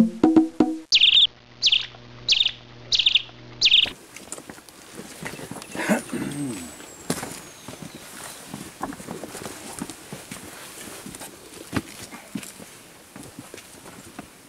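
Wood-block percussion music ends about a second in. A small songbird then chirps five times at an even pace, about one chirp every 0.7 seconds. After that come outdoor ambience, scattered knocks and faint distant voices.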